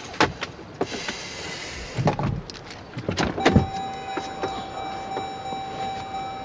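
Car interior handling sounds: small clicks and rustling, then a thump about three and a half seconds in as a car door is opened. A steady high electronic tone follows and holds to the end.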